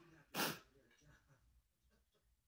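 A woman's single short, sharp breath about half a second in, then near silence.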